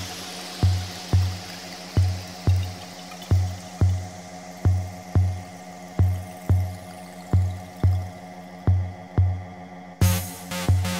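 Trance music: a steady electronic kick drum about twice a second under a sustained synth chord, with a falling noise sweep fading away over the first few seconds.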